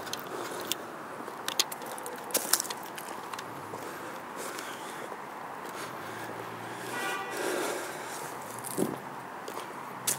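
Footsteps along a path with clicks and rustle from a handheld camera being carried, over a steady background hum. A brief pitched sound rises out of the hum about seven seconds in.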